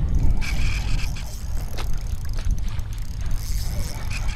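Wind buffeting the camera microphone on an open boat: a steady, uneven low rumble.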